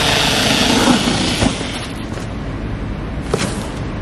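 Cordless electric cardboard cutter running and slicing through a corrugated cardboard box. The cut starts suddenly, is loudest for about a second and a half with a click near its end, then drops to a quieter steady noise.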